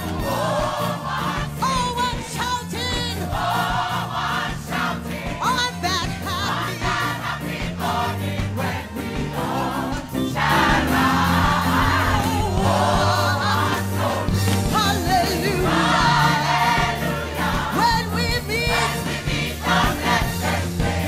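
Gospel song sung by a church congregation over a band, many voices together, growing louder about halfway through.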